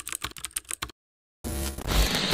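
Computer keyboard typing sound effect: a fast run of key clicks that stops just under a second in. About one and a half seconds in, a rising wash of noise with a low bass comes in.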